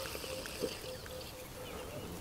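Quiet open-air background on calm water: a faint even hiss with a thin, faint steady tone and one soft tick.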